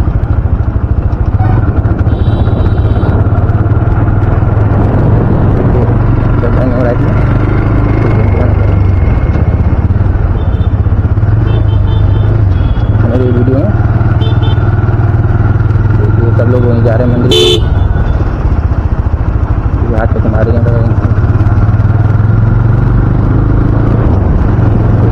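Motorcycle engine running steadily under loud road and wind noise while riding through traffic. Several short vehicle horn honks sound along the way, the loudest about 17 seconds in.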